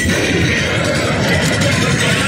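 Loud music, with guitar, playing for the dancers.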